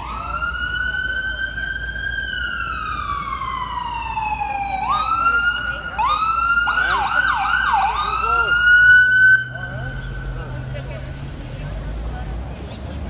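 Emergency vehicle siren wailing, its pitch rising and falling slowly, with a short burst of fast yelps about seven seconds in. Near the end it suddenly drops to a faint steady tone.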